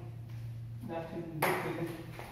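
A table tennis ball bouncing once, a single sharp click about one and a half seconds in, just after a few words from a man, over a steady low hum.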